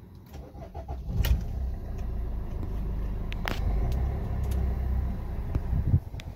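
Suzuki Ertiga diesel engine cranking and firing about a second in, then idling steadily with a low rumble. A sharp click comes midway.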